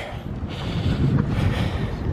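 Wind blowing across the camera's microphone, a low, uneven rumbling noise.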